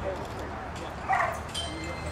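A dog gives a short yelp about a second in, then a thin, high, steady whine.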